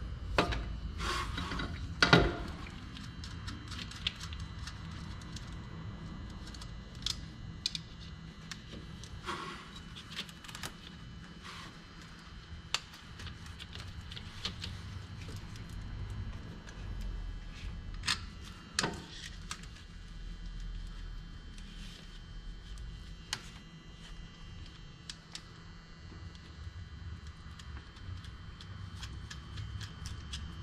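Scattered light clicks and knocks of hand tools and metal parts being handled in an engine bay, over a low steady hum. The sharpest knocks come about two seconds in and again around eighteen to nineteen seconds in.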